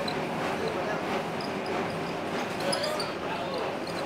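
Ride inside a moving vintage streetcar: a steady clatter and rattle from the car body and its wheels on the rails, with voices in the background.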